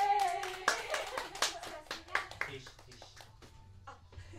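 A small audience claps after an acoustic song. The last held sung note with acoustic guitar stops within the first second, and the scattered claps thin out and die away by about three seconds in.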